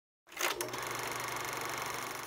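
A small machine running with a fast, even mechanical clatter and a low steady hum, cutting in suddenly about a quarter second in.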